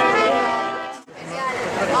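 Mariachi band music with trumpets and guitars, fading out about a second in, followed by people talking.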